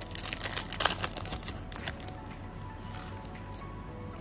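Foil trading-card pack crinkling and crackling as it is torn open and the cards slid out, with dense small crackles over the first two seconds and quieter after. Faint background music runs underneath.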